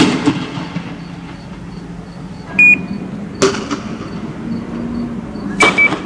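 Three sharp bangs with a ringing echo, at the start, about three and a half seconds in and near the end, typical of riot-control munitions fired during street clashes, over a steady low engine hum. A short high steady tone sounds about two and a half seconds in and again with the last bang.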